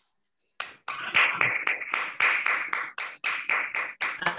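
Hands clapping in a round of applause, heard through a video call, about four or five claps a second, starting about half a second in.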